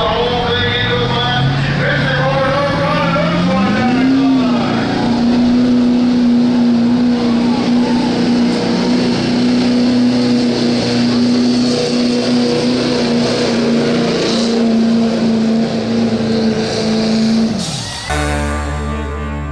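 Chevrolet Silverado pickup's Duramax diesel at full throttle, pulling a weight-transfer sled: the engine revs up over the first four seconds, holds steady at high revs under load for a long stretch, then drops off sharply near the end as the run finishes a full pull.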